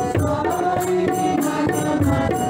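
Devotional Sai bhajan music: sustained melodic notes over a steady tabla beat.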